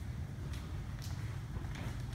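A steady low indoor room hum with a couple of faint taps, about half a second and a second in.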